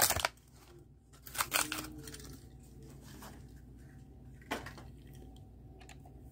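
A few soft clicks and rustles of a small diecast toy car and its packaging being handled, about a second and a half in and again near the end, over a faint steady low hum.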